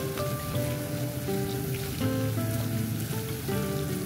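A rubber spatula stirring minced chicken and crumbled tofu in a glass bowl, a wet, noisy mixing sound, under soft background music with a simple melody of held notes.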